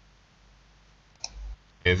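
Faint room noise, broken about a second and a quarter in by one short click, before a man starts speaking near the end.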